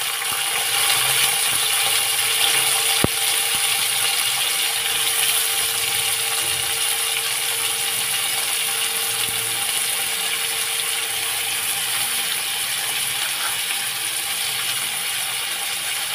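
Sliced onions sizzling steadily in hot mustard oil in a kadai, a constant crackling hiss, with a single sharp click about three seconds in.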